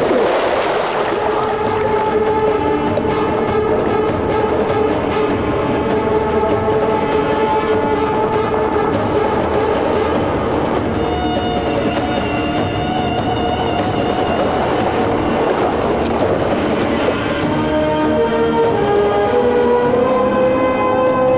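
Film background score of slow, sustained held chords that shift in pitch now and then, with a splash of water at the very start.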